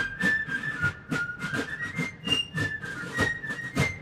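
Fife and drum music: a fife playing a high melody in held, stepping notes over a steady beat of drum strokes.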